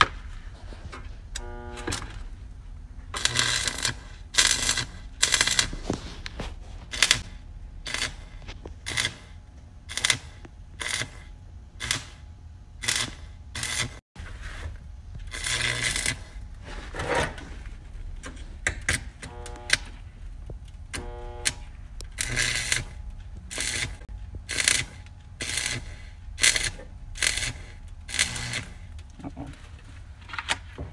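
Stick (arc) welder crackling in short repeated bursts, roughly one to two a second, as a flux-coated rod is run on a car's thin sheet-metal body panel.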